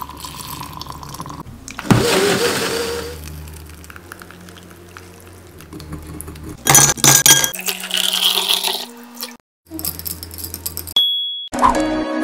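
Close-up kitchen sounds of wet fruit pulp and juice being sloshed and pressed through a mesh strainer with a spatula, with sharp clicks and scrapes. There is a sudden splashy burst about two seconds in and a quick run of sharp clicks a little past the middle.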